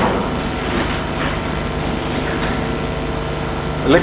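A steady mechanical hum with a hiss over it, unchanging throughout.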